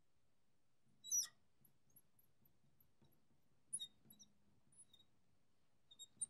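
Marker squeaking on a glass lightboard while an equation is written: short, high squeaks, the loudest about a second in, then a quick pair near four seconds, with faint ticks between.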